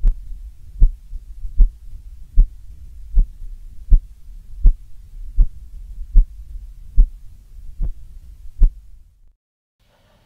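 ECG signal from an AD8232 heart-monitor module, fed through a USB sound card and played as audio. A short low thump comes with each heartbeat, about twelve evenly spaced beats at roughly 78 a minute, over a steady low hum of the noisy signal.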